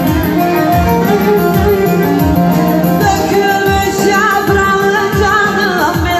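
Live Turkish folk music over a steady drum beat of about two strikes a second, with a melody instrument and a woman's voice singing with vibrato from about halfway through.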